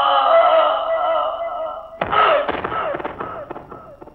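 A man's drawn-out, wavering scream as he falls, sinking slowly in pitch. About halfway through comes a sudden loud impact that rings and dies away.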